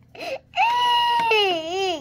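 Toddler crying: a short whimper, then about half a second in one long high wail that holds level and then wobbles down in pitch toward the end.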